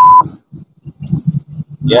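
A short, loud electronic beep at one steady pitch, lasting about a quarter of a second right at the start, followed by faint low murmuring voices.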